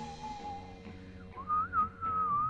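A whistled melody line over quiet, sustained backing chords in a rock song. The whistling is faint at first, then comes in louder about one and a half seconds in, gliding up to a higher note.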